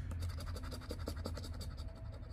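A poker-chip-style scratcher coin scraping the coating off a paper scratch-off lottery ticket in quick, rapid back-and-forth strokes.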